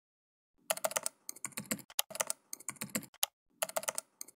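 Typing on a computer keyboard: rapid clicking keystrokes in about five short runs separated by brief pauses, starting about half a second in.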